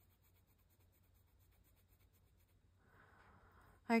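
Fountain pen nib scratching faintly on paper in quick, even back-and-forth strokes while shading in a small bar; the strokes stop about two and a half seconds in, followed by a soft rustle.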